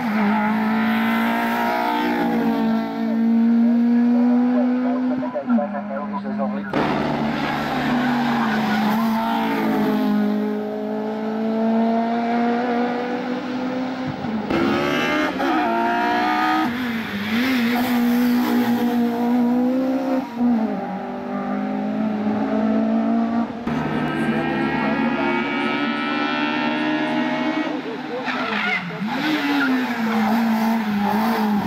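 Honda hatchback race car in the 1601–2000 cc touring class, its engine revving hard up through the gears: the pitch climbs steadily, drops at each shift and climbs again. Several passes follow one another with abrupt cuts between them.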